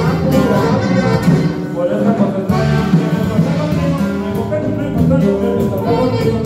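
A live band playing Latin dance music, amplified over the PA system, running continuously and loudly.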